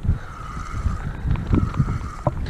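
Wind buffeting the microphone over open choppy water, an uneven low rumble that rises and falls, with a few faint ticks about one and a half seconds in.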